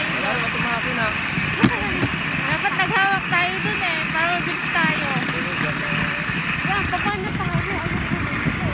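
Rail trolley rolling along the track, a steady rumbling ride with one sharp knock a little over a second and a half in.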